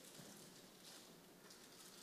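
Near silence: faint background hiss between narrated sentences.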